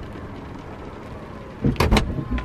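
A car's rear hatch shutting, heard from inside the car: a low steady background, then a couple of loud thuds near the end as it closes.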